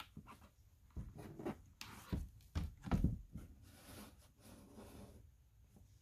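A cardboard board book being closed and set down by gloved hands: a series of soft knocks and rustles of handling, loudest about three seconds in.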